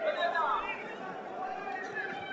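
Footballers shouting and calling to each other on the pitch during play, with one drawn-out call near the start.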